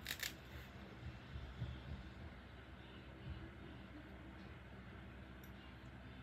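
Faint room tone with a steady low hum, broken by one short, light click right at the start and a few soft handling noises.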